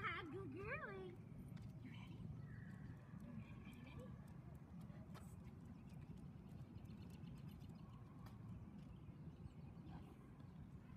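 A dog gives a brief, high, wavering whine in about the first second, then only a faint, steady low rumble remains.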